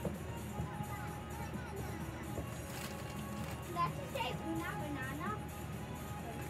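A child's voice making short, high, sliding sounds from about three and a half to five seconds in, over steady background music.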